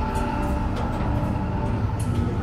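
A deep, steady rumbling drone with faint held tones above it: the Star Destroyer hangar-bay ambience of the attraction, played through its speakers.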